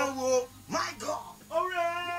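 A man's voice singing in sliding phrases, with a rising pitch glide about a second in and held notes near the end.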